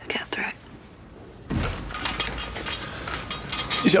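A door opening, with a clatter of clicks and knocks starting about one and a half seconds in. A short breathy sound comes at the very start.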